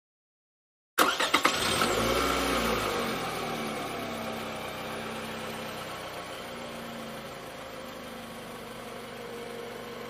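Cartoon car sound effect, after about a second of silence. A few sharp clicks, then a car engine starting and revving once, then settling into a steady run that slowly fades.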